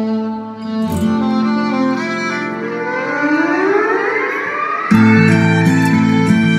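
Violin duet track played back over studio monitors: held violin notes, then a long rising sweep from about two and a half seconds in, and a louder, fuller section with a beat coming in suddenly about five seconds in.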